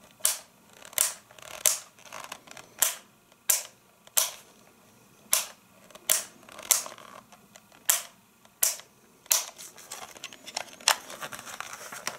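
Plastic speed-selector switch of a vintage 140-watt hand mixer being clicked through its settings by thumb: a string of sharp clicks, about one a second or a little faster. Near the end there is rustling handling noise as the mixer is picked up.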